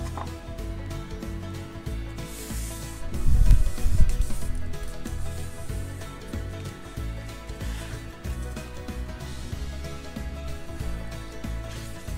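Background music with steady held notes over the rustle and rub of a large sheet of paper being folded and its crease pressed flat by hand, with a couple of dull thumps about three to four seconds in.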